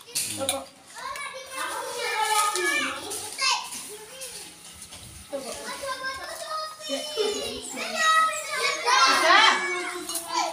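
Casual chatter of several women and children's voices talking over one another, none of it clear enough to follow.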